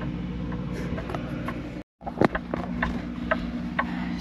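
Steady low mechanical hum with a few light clicks and knocks. It cuts out completely for a moment just under two seconds in, then carries on.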